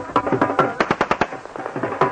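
A rapid run of sharp bangs, about ten a second for under a second, over loud festive music with drums.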